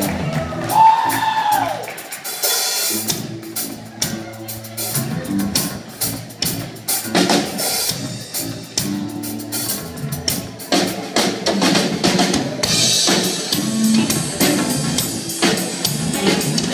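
Live rock band playing: drum kit keeping a steady beat under electric bass and electric guitars, the cymbals getting brighter near the end.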